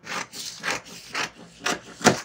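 Scissors snipping through a paper pattern sheet, four snips about half a second apart.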